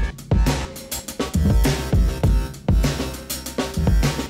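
Electronic drum loop with kick, snare and hi-hats playing along with a bass line. The bass is sidechain-gated by the drums through Ableton's Gate set to a slow attack of about 115 ms, which gives the bass a rhythmic movement that follows the groove. The kick hits steadily and is the loudest part.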